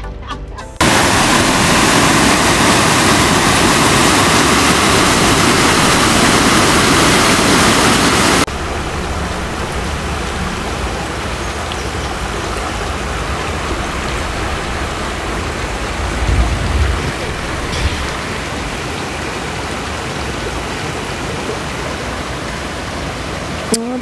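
Steady rushing of a shallow river running over stones. For the first several seconds a louder, even rushing noise plays, and it cuts off abruptly.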